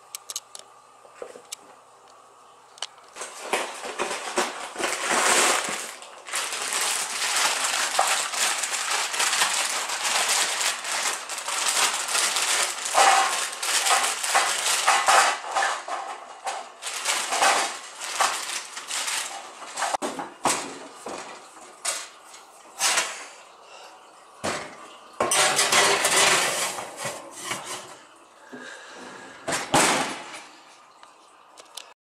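Plastic bag crinkling and rustling as frozen mini pastry bites are shaken out onto a baking tray, with the bites and tray clattering. The handling comes in two long bouts with a pause between.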